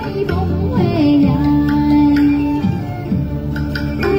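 A woman singing a song into a microphone with backing music, played over the coach's loudspeakers; she holds one long note in the middle.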